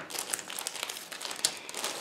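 A clear plastic bag crinkling as a plastic model kit's sprues are handled and drawn out of it: a continuous run of small, irregular crackles.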